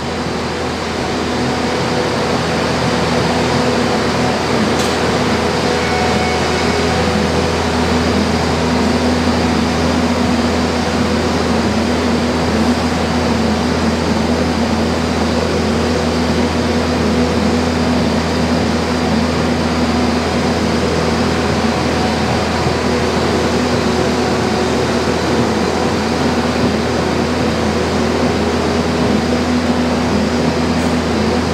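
Mensch sand bedding truck running with its side conveyor belt going, throwing sand into freestalls. It makes a steady machine drone with a constant low hum, growing a little louder over the first two seconds and then holding even.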